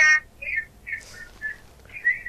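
A caller's voice over a telephone line, broken up into a few short high-pitched chirps with gaps between them.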